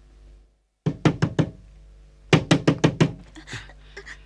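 Banging on a wooden door: four knocks about a second in, then a faster run of about eight knocks from a little over two seconds in, with a few more near the end.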